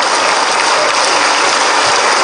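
Audience applauding in a large hall, a dense, steady clapping that carries on without a break.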